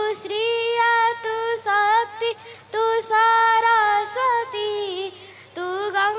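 A young girl singing a bhajan (a Hindu devotional song) solo into a microphone, with no accompaniment. She sings long held notes with a slight waver, pausing briefly between phrases twice.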